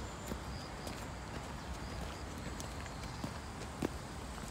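Footsteps on a dirt forest trail: irregular soft steps over a steady outdoor background hiss, with a sharper tap just before the end.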